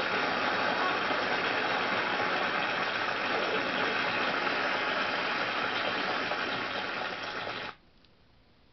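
Studio audience applauding after the sketch's final punchline, a steady even clatter that cuts off abruptly near the end.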